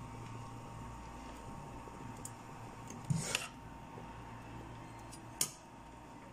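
Metal ladle knocking against the side of an aluminium pot of molokhia as it is stirred: a louder knock about three seconds in and a sharp click near the end, over a steady low hum.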